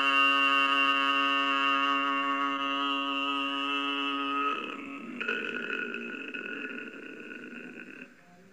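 A man's deep voice chanting a long, drawn-out held note. About four and a half seconds in it changes to a rougher, breathier sound that fades away toward the end.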